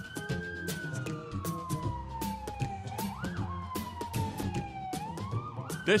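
A siren wailing in slow sweeps: its pitch rises for about half a second, falls over the next two seconds, falls again, then climbs near the end. Music with sharp percussive hits plays under it.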